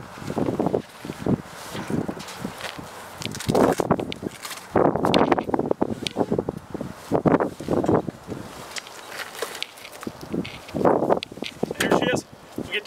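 Rustling and knocking of a soft fabric carrying case as an electric ice auger is unpacked from it and lifted out, in irregular bursts.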